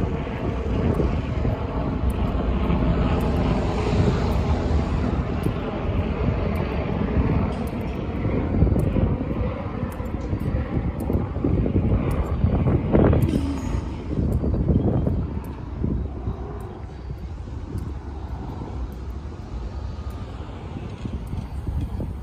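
A steady low engine drone with a faint hum in it, loudest through the first half and easing off after about fourteen seconds.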